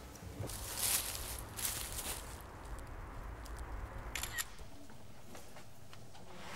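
Footsteps crunching through dry fallen leaves, a few steps in the first two seconds, over a low steady rumble. There is a short sharp clatter a little after four seconds.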